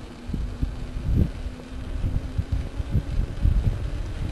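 Wind buffeting the microphone of a camera riding on a moving mountain bike: irregular low rumbling gusts, with a faint steady hum under them.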